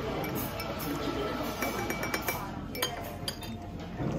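A metal teaspoon stirring tea in a china cup, clinking against the cup several times, with a brief ringing chime about two seconds in.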